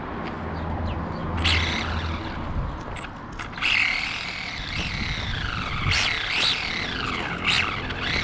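Small electric motor and gears of a Carisma GT24 1/24-scale RC rally car whining under throttle. The pitch rises sharply with each burst of throttle and falls away as the car slows, several times over.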